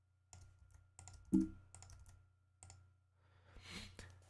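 Computer keyboard keystrokes and clicks: a scattered run of light taps over a faint low hum, with one louder click about a second and a half in, as a key is pasted into an input box and confirmed.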